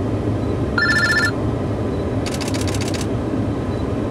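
Rapid bursts of camera shutter clicks from still cameras firing in continuous mode, one about a second in and a longer one in the middle, over a steady traffic rumble. With the first burst comes a short electronic trill alternating between two pitches, like a phone ringing.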